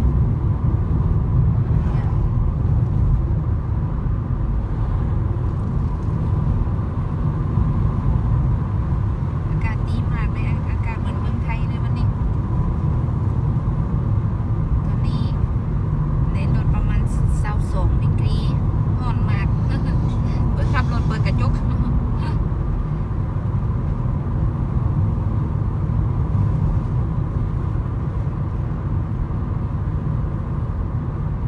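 Car cabin noise while driving at a steady speed on a country road: a continuous low rumble of engine and tyres heard from inside the car.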